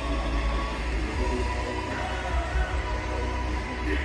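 Music with a steady low bass and a long held tone, without singing.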